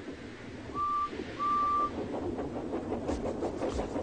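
Steam locomotive whistle giving two short, single-pitched toots, followed by the hiss and puffing of the engine getting under way near the end.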